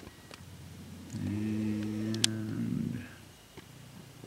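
A man's voice humming a steady, low "mmm" for about two seconds, starting about a second in, with a single sharp click partway through.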